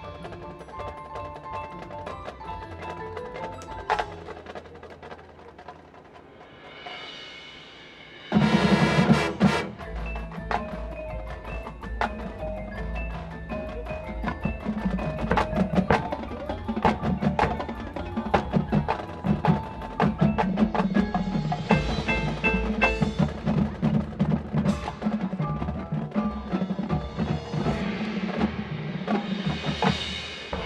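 Marching band playing. At first the front ensemble's mallet percussion plays quietly on its own. A swell builds, and about 8 seconds in the full band enters suddenly and loudly, with heavy low brass and drums carrying on in a driving rhythm. Another swell rises near the end.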